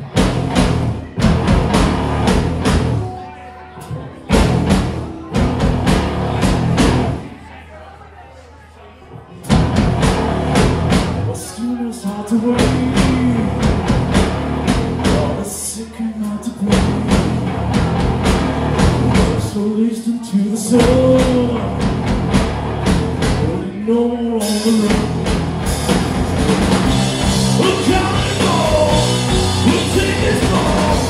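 A live heavy rock band playing an instrumental passage: drum kit, distorted electric guitar and bass. Drum hits open it, it drops quieter for a couple of seconds about eight seconds in, then the full band comes in, with a note that swoops up and down every few seconds and heavier cymbals near the end.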